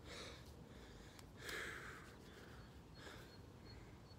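A man breathing hard while catching his breath after push-ups: three faint, slow exhales about a second and a half apart. The breathing is the sign of fatigue from the continuous exercise.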